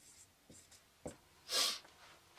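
Marker pen writing on a whiteboard: faint short scratchy strokes, a click about a second in, then a short breathy hiss near the end.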